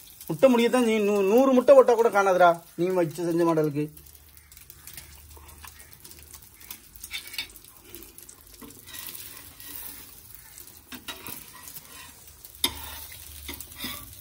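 A man's voice for the first few seconds, then a slice of bread frying on a flat tawa: a faint, steady sizzle with light scrapes and taps of a steel spatula against the pan.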